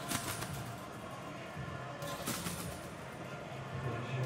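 Competition trampoline bed and springs sounding with each landing, two sharp impacts a little over two seconds apart, under a faint steady low hum.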